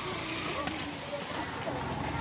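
Schoolchildren chattering and calling out over a steady outdoor background hiss, with several faint high voices overlapping.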